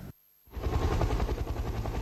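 Helicopter in flight, heard from inside the cockpit: steady rotor and engine noise with a fast, even pulsing of the blades. It starts abruptly about half a second in, after a brief silence.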